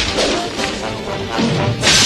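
Cartoon action sound effects over dramatic background music: a crash of shattering debris at the start, then music, then a second loud crash near the end.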